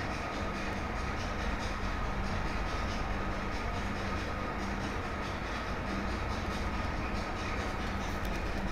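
Steady background noise with a faint low hum, the open microphone's noise floor while nobody speaks.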